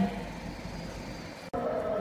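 Low, steady background noise without speech. About one and a half seconds in it breaks off suddenly and a slightly louder background takes over.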